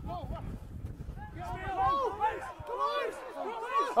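Rugby players shouting short calls to each other around a ruck, several voices overlapping, getting busier in the second half.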